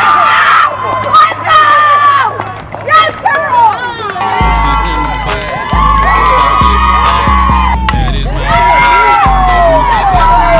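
A group of young women laughing, shouting and cheering, then a song with a heavy bass line and beat starts about four and a half seconds in.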